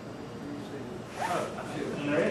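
Quiet room tone, then about a second in a few murmured words with a brief rustle.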